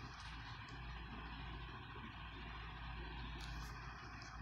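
Faint, steady low background hum and noise with no speech, and a soft click about three and a half seconds in.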